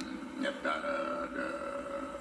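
A man's voice holding a drawn-out hesitation sound, a steady "uhh" for over a second mid-sentence, heard through a television speaker.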